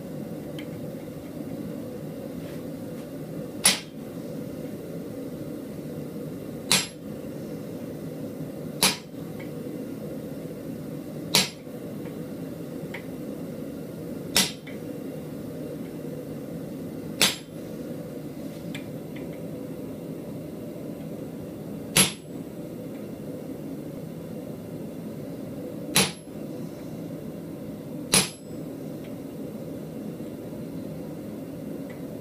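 Hammer striking a blacksmith's butcher chisel held against hot steel in a vise, cutting the tooth line of a forged animal head: nine single, sharp metallic blows, a few seconds apart and unevenly spaced. A steady low hum runs underneath.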